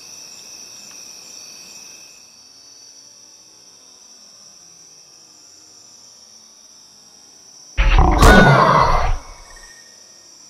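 Insects trilling steadily in two high, continuous tones; the lower tone drops out about two seconds in. About eight seconds in, a sudden loud sound of just over a second cuts across the trilling, then stops.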